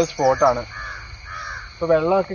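Two short crow caws, one after the other, about a second in.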